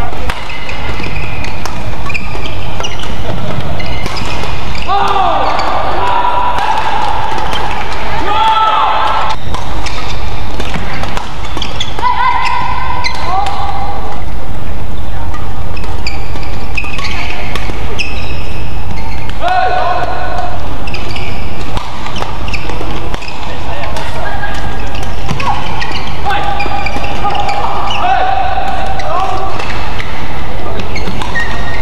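Doubles badminton rallies: rackets hitting the shuttlecock and players' shoes thudding and squeaking on the court, with loud voices calling out at intervals.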